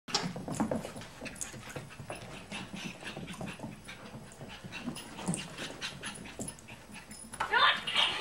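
A puppy scuffles with a plush toy, with soft rustles, small knocks and a few dog noises. Near the end a laughing plush dog toy sets off its recorded laughter, much louder, in quick repeated bursts.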